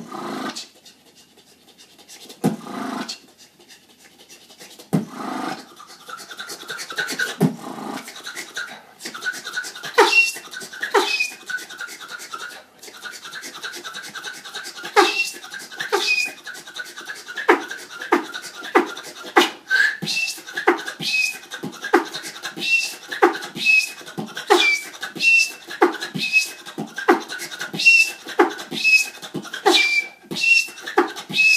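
Solo human beatboxing. It opens sparse and slow, with a few separate mouth sounds, then from about ten seconds in settles into a steady beat of sharp kick- and snare-like strikes, many carrying short high squeaks.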